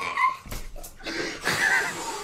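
A man crying in short, high-pitched whimpers, acting out a child's cries while being beaten.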